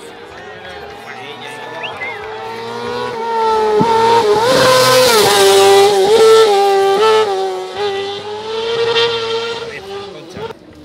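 Single-seat tube-frame race buggy climbing through a hairpin, its engine revving high, with the pitch dropping at each gear change. It grows louder as the car passes close about four to seven seconds in, then fades.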